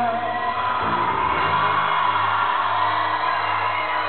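A live acoustic rock band's sustained final notes die away about half a second in, and a large concert crowd cheers and whoops.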